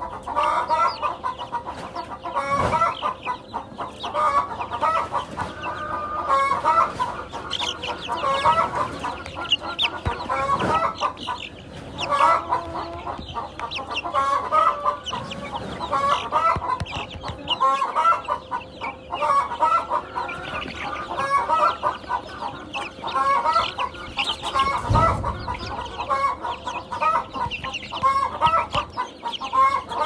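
A flock of five-week-old chicks peeping and calling nonstop, many short overlapping chirps, with a faint steady hum underneath.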